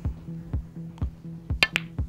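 Background music with a steady beat, about two beats a second. Near the end come two sharp clicks of a snooker shot, cue and balls striking.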